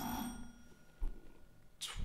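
A quiz buzzer's bell ringing out after a contestant presses it, a cluster of steady tones fading away over the first second with one tone lingering faintly; a soft thump about a second in.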